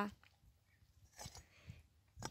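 Mostly quiet, with two faint, soft sloshes of water about a second in and again just before the end. They come from a slotted skimmer being moved through pieces of pig's head in a cauldron of water that is not yet boiling.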